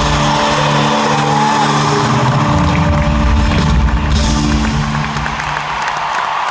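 Live band at the close of a song in an arena, holding sustained chords over a steady bass, recorded from among the audience. Crowd cheering and screaming runs underneath and swells about four seconds in.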